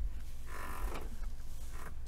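A faint creak lasting about a second and a half, starting about half a second in.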